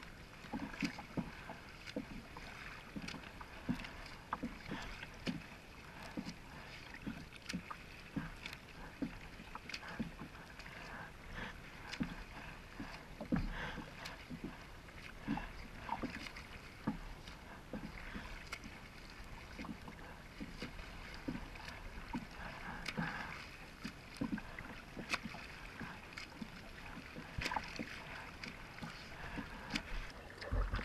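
Water splashing and sloshing close around a paddled kayak, a steady run of small irregular splashes, heard through a GoPro sitting just above the waterline.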